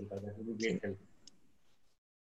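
A person's voice speaking quietly and indistinctly for about a second, then one faint click, then near silence.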